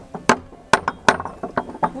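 Metal ring knocker (zvekir) rapped against a wooden gate: a quick series of sharp knocks.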